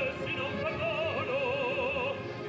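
Male operatic baritone singing with a wide vibrato: a short break just after the start, a moving phrase, then a long held note from about halfway.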